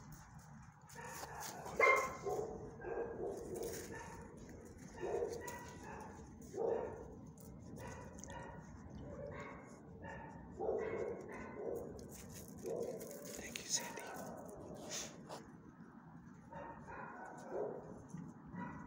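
A dog barking in a string of short barks spread through several seconds, the loudest about two seconds in.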